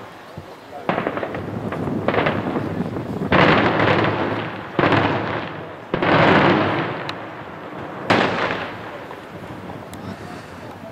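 Daytime fireworks: aerial shells bursting in colored smoke in quick succession. About six sharp bangs each trail off in a fading echo over a second or so, and the loudest come in the middle.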